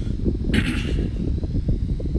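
Steady low rumbling background noise, with one short breathy hiss about half a second in.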